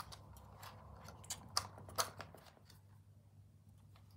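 Arms of a Holy Stone HS720 folding drone being swung open by hand, with three sharp plastic clicks between one and two seconds in as the arms lock out, and a few fainter handling ticks.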